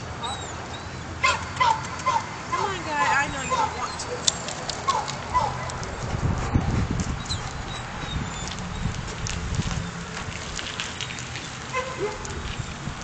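A dog giving several short, high whines and yelps that bend in pitch in the first half. A low rumbling noise follows.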